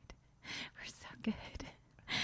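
Faint whispering close to the microphone, in short breathy bursts with a couple of small clicks.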